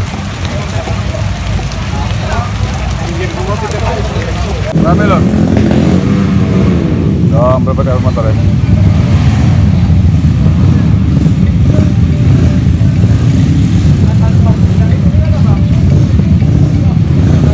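Motorcycle engines running with a steady low rumble, stepping up louder about five seconds in, with voices of a crowd over it.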